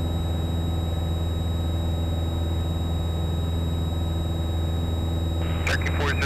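Piper Cherokee's engine and propeller droning steadily in the climb, heard inside the cockpit as an even low hum. Near the end a radio voice begins.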